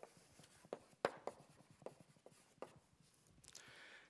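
Chalk writing on a blackboard: a faint string of short taps and scrapes as a couple of words are written.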